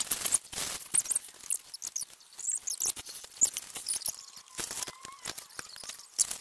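Crinkly rustling of a plastic or paper gift bag being handled, broken up by small clicks and taps.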